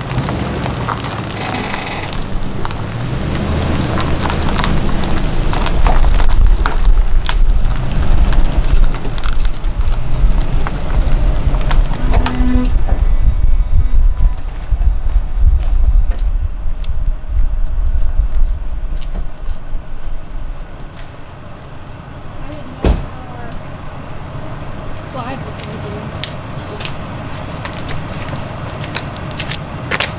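Highland Ridge travel trailer being backed slowly over a gravel campsite: its tyres crunch on the gravel under a low rumble from the tow vehicle. The sound grows loudest in the middle as the trailer closes in on the bumper, drops off about two-thirds of the way through, and a single knock follows shortly after.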